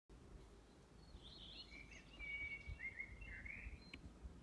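A songbird singing one faint, warbling phrase of about two and a half seconds, over a low outdoor rumble.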